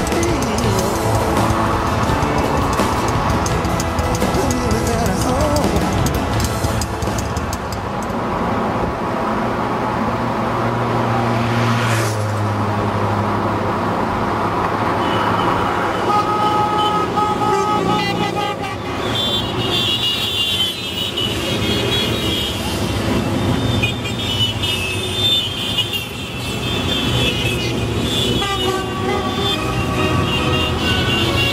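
Motorcycles in a mass ride passing with engines running and horns tooting, under background music.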